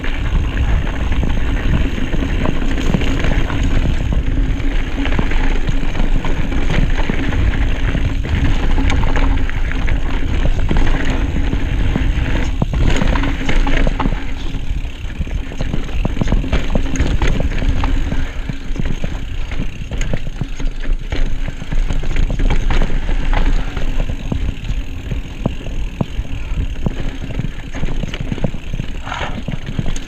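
Cannondale Habit carbon mountain bike riding fast down dirt singletrack, heard from an onboard camera: steady wind rumble on the microphone and tyres rolling over dirt, with frequent clicks and rattles from the bike as it hits bumps.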